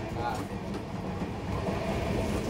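Steady low rumbling background noise with a faint voice briefly in it.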